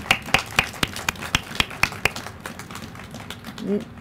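A small group clapping: scattered, separate claps rather than a dense roar, thinning out and stopping after about three seconds.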